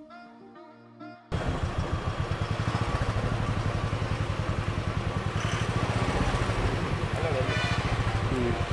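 Soft music for about the first second. Then, suddenly and loudly, a bus's diesel engine runs with a steady, fast low pulse as the bus swings slowly round a sharp hairpin bend close by.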